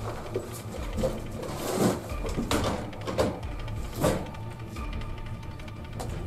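Equipment being handled on a metal wire cart: a handful of knocks and rattles, spaced under a second apart and mostly in the middle, over a low steady hum.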